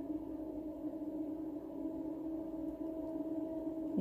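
Steady ambient meditation drone of several held tones, the background of a 417 Hz healing-frequency track.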